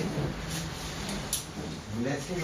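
Room sounds of a seated group stirring, with a voice trailing off at the very start and two light clicks about half a second and just over a second in.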